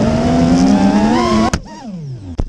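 FPV racing quadcopter's motors and propellers whining as the throttle is raised in a dive, the pitch climbing, then a sharp impact about one and a half seconds in as the quad crashes, after which the motor whine drops off and falls in pitch as the props spin down.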